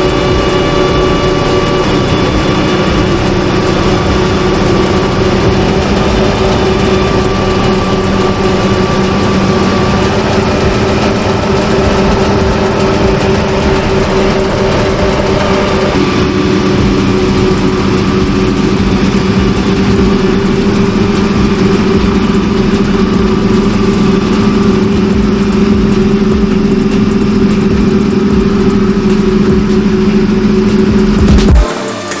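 Deutz-Fahr combine harvester running steadily under load as it harvests on a steep slope, a constant low engine drone with a hum above it. The tone changes about halfway through.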